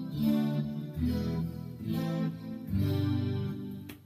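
Clean-toned Skervesen electric guitar played through a Fractal Axe-FX, strumming a few basic major and minor triad chords, one after another. Each chord is left to ring, with a new one struck about every second.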